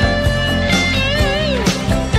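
Rock song playing, with drums and guitar. About a second in, a long held lead note bends and wavers with vibrato.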